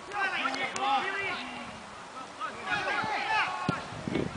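Distant shouts and calls of players across a football pitch, one burst of calling in the first second or so and another near three seconds, with a short knock near the end.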